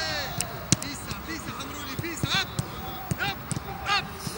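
Footballs being kicked on a grass pitch: a string of irregular sharp thuds, the sharpest about three-quarters of a second in, with players' short shouts and calls across the training ground.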